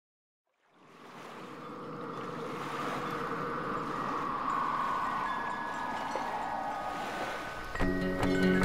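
Rushing, bubbling water, like an underwater ambience, fading in about a second in after silence and holding steady. Music with plucked notes starts near the end.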